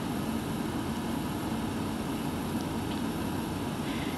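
Steady background noise, a low hum with hiss, even throughout with no distinct events.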